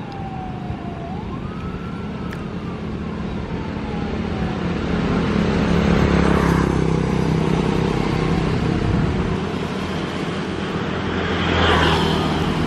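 Road traffic passing, swelling about six seconds in and again near the end as a motorcycle goes by close. A faint tone dips, rises and slowly falls in the first few seconds.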